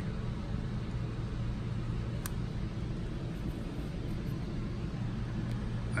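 Steady low background hum with an even hiss, and a single faint click about two seconds in.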